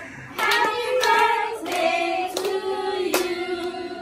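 A group of women singing together in long drawn-out notes, with a few sharp handclaps.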